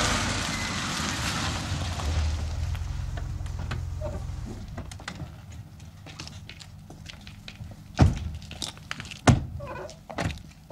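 A car on a wet street, its engine and tyre hiss fading over the first few seconds as it pulls up and stops. Then two car doors slam, a little over a second apart.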